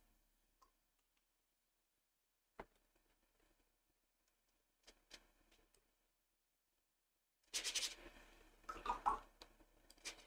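Mostly near silence, broken by a single soft click a couple of seconds in and a few tiny ticks. Near the end comes a couple of seconds of faint, uneven scratching from a paintbrush working over wet watercolour paper and the palette.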